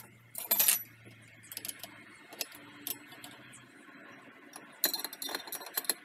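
Metal spanners clinking and rattling as they are handled and fitted onto the nut holding a circular saw blade. The loudest rattle comes a little under a second in, and a cluster of clinks near the end.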